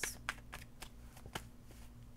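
Tarot cards being handled and shuffled: a run of light, crisp card clicks in the first second and a half, then faint rustling over a steady low hum.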